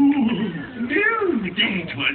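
A character's voice in the show's soundtrack, making drawn-out vocal sounds without clear words, its pitch sliding up and down several times.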